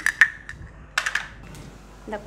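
A few sharp metallic clinks of stainless steel cookware, each with a short ring: two at the start and a small cluster about a second in, as the pot lid is handled.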